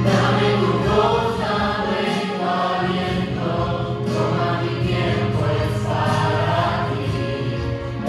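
A mixed group of men's and women's voices singing a Christian song in harmony through microphones, over a steady low accompaniment.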